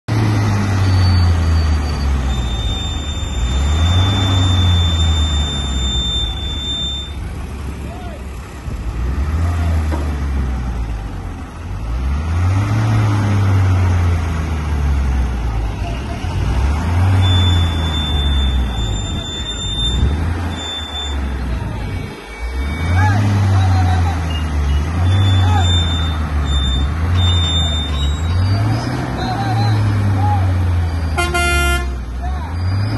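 Diesel engines of several pick-and-carry hydraulic cranes revving up and down repeatedly as they take the weight of a heavy machine on their booms, the engine note rising and falling every two to three seconds.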